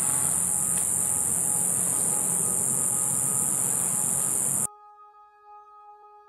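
Steady high-pitched insect chorus over outdoor background noise, cut off abruptly about four and a half seconds in. Faint music with long held tones follows.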